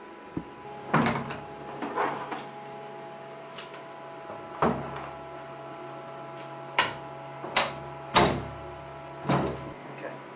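A series of irregular knocks and clunks, about eight in all, some with a short ringing tail, over a steady hum.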